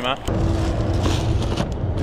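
A vehicle engine running steadily: an even low rumble with a faint steady tone above it.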